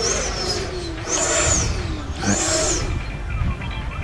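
Electric ducted fan of an E-flite Viper 90mm jet, driven by an 8-cell FMS 1500kv motor, whining high as the throttle is pushed up and pulled back twice, about a second apart. Low wind rumble on the microphone runs underneath.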